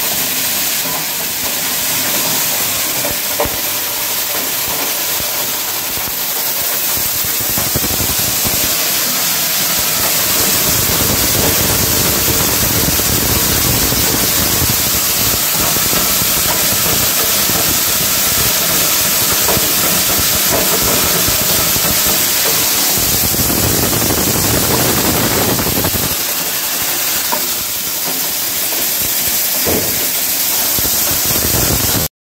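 Soybean-processing machinery running with a loud, steady rushing noise that has no clear pitch, as soybeans are poured into it.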